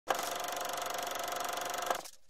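Electronic buzzing sound effect for a channel intro: a steady, rapid, even pulsing with a held tone, cutting in and out abruptly.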